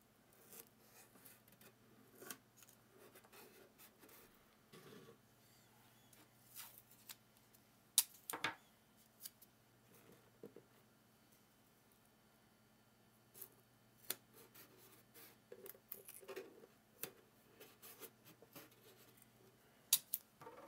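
Masking tape and 3D-printed plastic parts being handled by hand: scattered soft clicks, taps and rustles, with a sharper click about eight seconds in.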